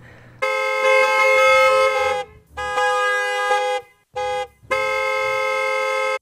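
Car horns honking: three long honks and one short toot, each held at a steady pitch.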